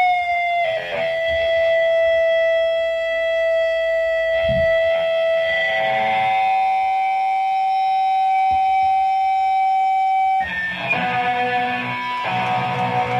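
Electric guitar feedback ringing on steady held tones at the end of a live hardcore punk song, its pitch shifting slightly about six seconds in. About ten seconds in the feedback stops and the electric guitar starts the next song.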